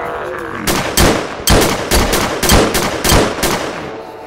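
A rapid volley of about eight gunshots, roughly two a second, starting under a second in and stopping shortly before the end.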